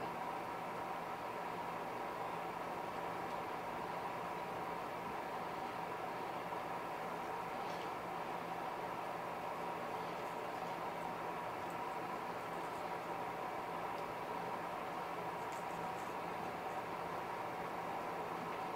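Steady mechanical hum holding several even tones, with a few faint clicks from small handling.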